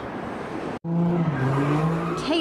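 A car engine held at high revs while its tires spin on pavement during street-takeover donuts. It comes in abruptly about a second in, with a steady engine note that drops slightly partway through.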